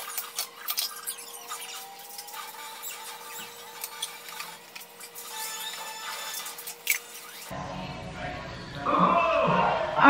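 Quiet kitchen handling: a few light clicks and clinks of a utensil against a slow cooker, over a faint steady hum. Louder music comes in about two seconds before the end.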